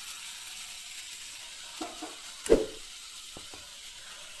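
Mashed onion-tomato masala sizzling gently in a nonstick frying pan, a steady soft hiss. A sharp knock about two and a half seconds in is the loudest sound, with a few faint clicks around it.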